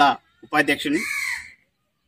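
A crow cawing: one drawn-out, harsh call about a second in, overlapping the tail of a man's voice.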